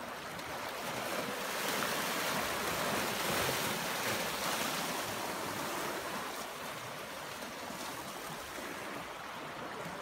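Small sea waves washing against shoreline rocks, a steady wash of water that swells a little a couple of seconds in and then eases.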